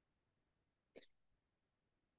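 Near silence, broken once about a second in by a single short, faint throat sound from a man.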